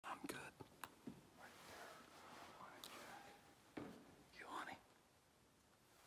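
Faint whispering voices, broken by a few soft clicks.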